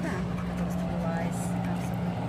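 Steady low mechanical hum of unchanging pitch, with faint voices in the background.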